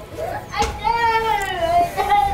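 A child's high-pitched voice calling out, one long drawn-out call that falls slightly in pitch near its end.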